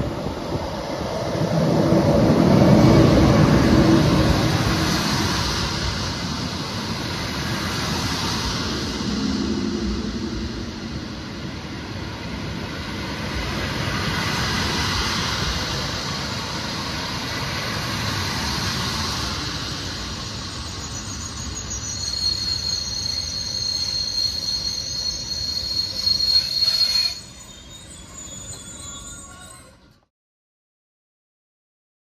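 An SJ InterCity train hauled by an Rc electric locomotive passes along the platform: a loud rumble as the locomotive goes by, then the steady rolling of its coaches. A high, steady wheel squeal rings for several seconds near the end before the sound drops suddenly to a much quieter background.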